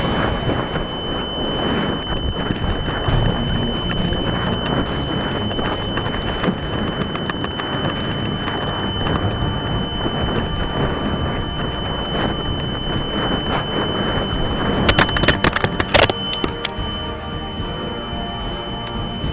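Wind noise on a model rocket's onboard camera as it comes down under its parachute, with a steady high whine. A quick burst of sharp clatters about fifteen seconds in as the rocket lands.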